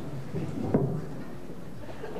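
Footsteps on a stage floor, irregular low knocks with one sharper knock a little under a second in.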